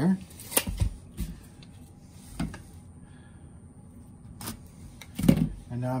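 A few scattered clicks and light knocks from handling pine strainer sticks, a pen and a tape measure on a paper-covered workbench, the loudest knock near the end.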